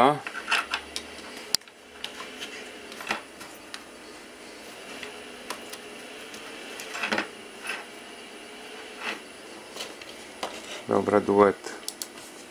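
Scattered clicks and knocks of speaker cables being unplugged and reconnected at a small tube amplifier, over a faint hiss. Near the end a sung line of music comes back through the newly connected speakers.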